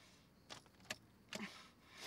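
Car keys jangling and clicking in the ignition as the key is turned. There are three faint, separate clicks about half a second apart, and no engine turns over.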